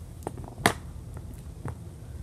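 A cardboard toilet-paper-roll locker knocked over onto a tabletop among plastic toy figures: a few light taps and clicks, the sharpest just over half a second in.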